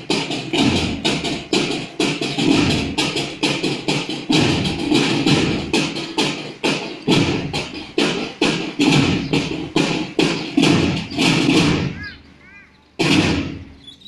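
Procession drum band beating drums in a steady march rhythm, about four strokes a second. The drumming breaks off briefly about twelve seconds in, then starts again.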